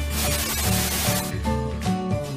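Background music with a burst of TV-static hiss laid over it, as in a video transition effect; the hiss cuts off a little over a second in and the music carries on.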